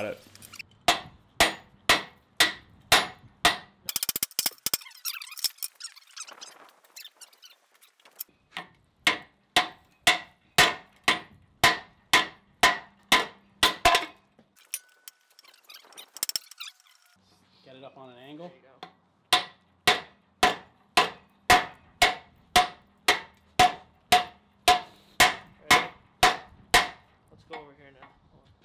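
Hand-forging blows: a rounding hammer striking a red-hot steel hammer-head billet on an anvil, about two and a half blows a second, each with a short metallic ring. The blows come in three runs with short pauses between, as the smith works the faceted billet smooth.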